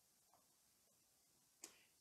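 Near silence in a pause between spoken phrases, broken by one brief faint click near the end.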